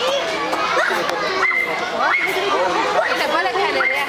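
Several people talking over one another, children's voices among them, with a few short high-pitched calls.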